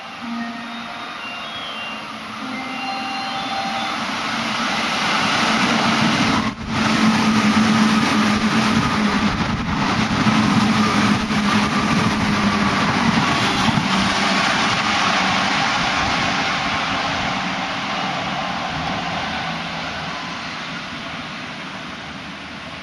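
JR West 205 series eight-car electric commuter train passing through a station at speed without stopping. The rumble and rail noise build over the first few seconds, stay loudest through the middle and fade slowly as the train draws away.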